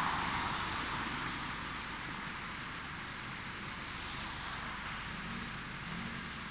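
Steady rushing vehicle noise outdoors, easing down over the first couple of seconds and then holding.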